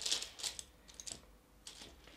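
A makeup brush working powder eyeshadow, a few short scratchy brushing strokes, the first the loudest.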